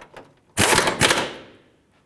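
Pneumatic impact wrench hammering in one short burst about half a second in, then dying away, as it snugs up a subframe bolt.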